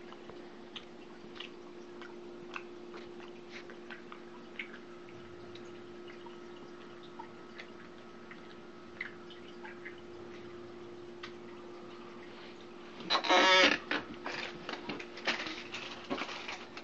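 A steady low electrical hum with scattered small clicks and rustles of handling. About thirteen seconds in comes a loud, harsh burst, followed by more irregular clicking and rustling.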